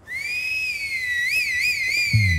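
A loud finger whistle blown through the lips: one long high note that rises as it starts, holds, then warbles up and down three times near the end.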